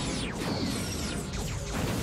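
Sci-fi space-battle sound effects over a dramatic music score: several quick falling whooshes as the Delta Flyer swoops past and fires photon torpedoes, building into a blast of explosion noise as they strike the Borg cube near the end.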